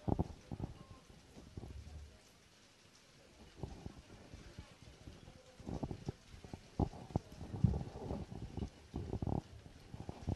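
Quiet, irregular low thumps and knocks, a few early on and then clustering through the second half.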